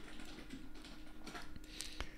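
Faint, irregular clicks of computer keyboard keys over a faint steady hum.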